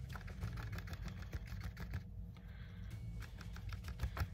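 Stiff paintbrush dabbing thick paint onto paper: a quick, irregular run of soft taps that thins out briefly near the middle.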